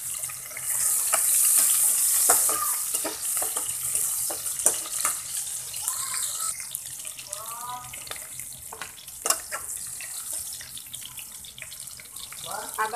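Sliced onions and green chillies sizzling in hot oil in an aluminium pan, the sizzle louder for a couple of seconds just after the chillies go in. A metal spatula clicks and scrapes against the pan as the mix is stirred.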